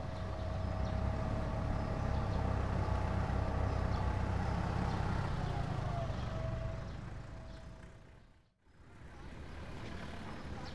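Coach engine running with a low rumble and a steady whine as the bus pulls away. Both fade out over a few seconds and cut to near silence about eight and a half seconds in, after which a quieter outdoor background takes over.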